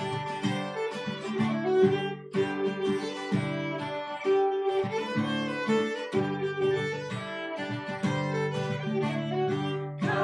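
Violin playing a folky hymn tune over strummed acoustic guitar chords, the instrumental introduction before the singing comes in.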